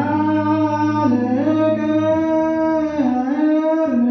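A group of men singing Ethiopian Orthodox liturgical chant (zema) together, slow and drawn out, with long held notes that shift slowly up and down in pitch.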